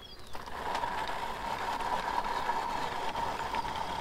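Hand-cranked rotary drum grater grinding walnuts: a steady grinding rasp as the handle is turned, starting a moment in.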